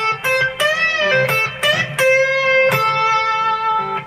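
Electric guitar playing a single-note pentatonic lead phrase with string bends. One note bends up and back down about half a second in, followed by longer held notes.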